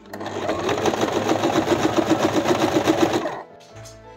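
Electric sewing machine stitching through fabric at a steady speed, an even rapid run of about nine stitches a second, stopping shortly before the end.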